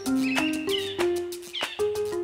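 Salsa band music ending the song: quick percussion hits under held pitched instrument notes, with short high gliding cries over the top.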